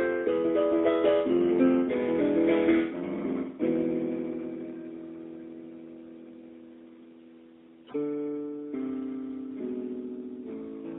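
Solo piano playing a classical-style original piece. A run of quick notes gives way to a chord held and left to ring, fading for about four seconds, before the playing picks up again near the end.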